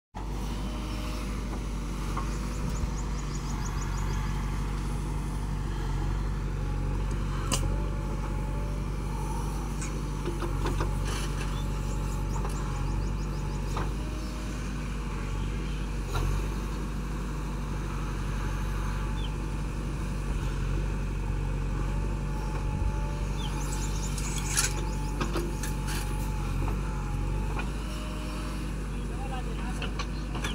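JCB backhoe loader's diesel engine running steadily under load as its backhoe bucket digs sand, with a few sharp knocks from the bucket and arm.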